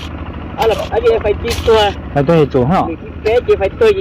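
A person talking in Hmong, over a steady low rumble.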